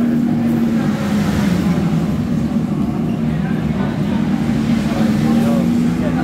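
Ducati V4 S motorcycle engine running on track, with a steady held pitch, played back through a TV's speaker from onboard lap footage. Indistinct voices in the room underneath.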